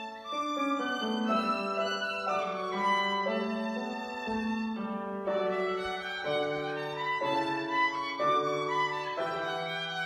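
Violin playing a melody of held, changing notes over grand piano accompaniment.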